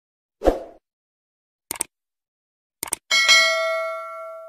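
Subscribe-button animation sound effects: a short sound effect, two quick pairs of mouse-like clicks, then a bell ding about three seconds in that rings on and fades.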